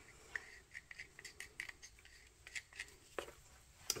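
Faint scraping and light ticking of a wooden craft stick stirring resin mixed with gold pigment paste in a small cup, with a slightly louder click about three seconds in.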